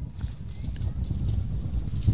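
Low, uneven rumble with a faint hiss, picked up by a handheld microphone outdoors between spoken phrases.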